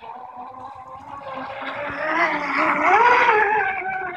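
Miss Geico 24 RC racing catamaran running at speed on a 6S battery, its electric motor whining. The whine swells as the boat passes close, peaks about three seconds in with its pitch rising and then dropping, and fades near the end.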